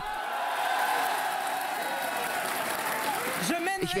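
Audience applauding and cheering: dense, steady clapping with a few voices calling out over it. Speech starts again near the end.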